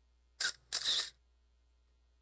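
Camera shutter sound: two quick clicks about a third of a second apart, the second longer than the first, against near silence.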